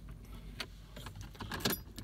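Car keys being handled, a few light clicks and jingles scattered through the moment, over a faint steady low hum.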